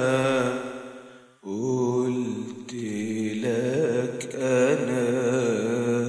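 A singer holding long wordless sung notes with wavering pitch, a drawn-out melisma in Egyptian tarab style over a steady low tone. One phrase fades out about a second and a half in, and a new sustained phrase begins right after.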